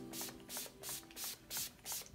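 Pump-spray bottle of Urban Decay De-Slick setting spray misting in quick short hissing puffs, about three a second, six in all.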